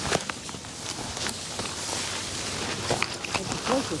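Footsteps and the rustle of bracken and ferns brushing against legs and body as people push through dense undergrowth, with scattered small cracks.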